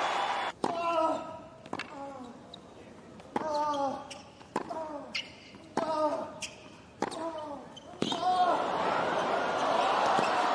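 A tennis rally on a hard court: seven racket strikes on the ball about a second apart, with the players grunting on their shots. Near the end the point finishes and the crowd breaks into cheering and applause.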